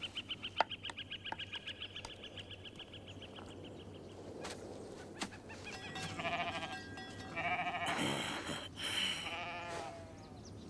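Goats and sheep bleating in quavering calls, starting about six seconds in and lasting nearly to the end. Before that, a fast high trill of about ten chirps a second fades out over the first four seconds.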